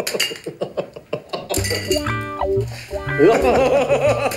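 Men laughing heartily, and about a second and a half in a light comedic music cue starts, with a pulsing bass line and short bright notes under the laughter.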